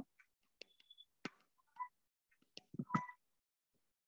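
Mostly quiet, with a few faint short clicks and brief tone blips as hands center terracotta clay on a small motorised portable pottery wheel.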